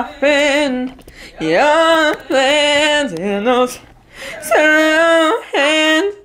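A woman singing a melody in short phrases of long held notes with a wavering pitch, with brief breaks between the phrases.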